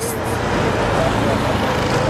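Steady road traffic noise, a continuous rush from passing vehicles.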